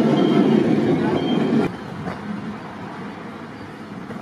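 Narrow-gauge railway coaches rolling past close by, their wheels running on the rails. The loud rolling noise drops suddenly about a second and a half in as the last coach clears, leaving the quieter sound of the train moving away.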